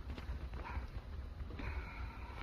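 A person's voice making short animal-like calls, with a held call starting near the end, over scuffing steps on a concrete floor.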